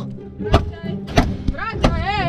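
Three hard thuds about two-thirds of a second apart: a police baton being jabbed into a cardboard wall, punching holes through it. Background music runs underneath.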